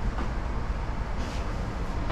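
Steady low hum of running equipment inside the motorhome, with faint soft sounds of the dinette table being slid and set in place.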